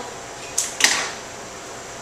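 Two sharp snips about a quarter second apart, the second louder: florist's scissors cutting through a flower stem.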